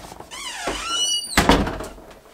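An interior door's hinges squeak in a wavering, rising squeal as it swings, then the door shuts with a single thud about a second and a half in.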